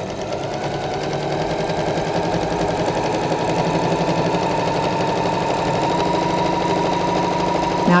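Computerized electric sewing machine running steadily at speed, straight-stitching a seam through a layer of fashion fabric over a lining; it builds a little in level over the first few seconds and stops near the end.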